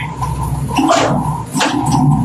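A machine running with a steady low drone, with two short sharp noises over it about a second apart.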